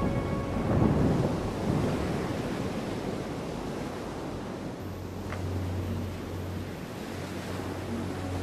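Ocean surf breaking on rocks: a loud crash about a second in, then a steady rush of water and spray. A low steady hum comes in about halfway through.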